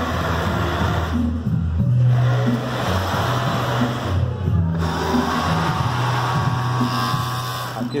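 Industrial sewing machines, overlock included, stitching in bursts over the steady hum of their motors; the stitching chatter stops twice for a moment while the hum runs on.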